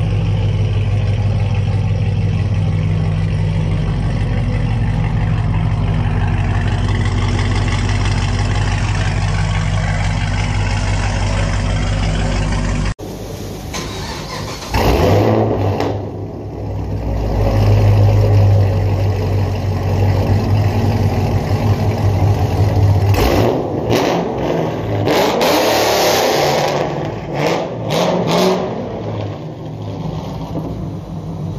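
Chevrolet Camaro with long-tube headers idling with a steady, deep exhaust note. After an abrupt cut about 13 s in, the exhaust is heard close up and louder: it rises sharply about 15 s in, swells again a few seconds later, and gives a series of loud, rough bursts in the last few seconds as the car revs and pulls away.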